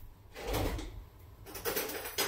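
A kitchen drawer sliding, then a short clatter of utensils about a second and a half in as a spoon is fetched.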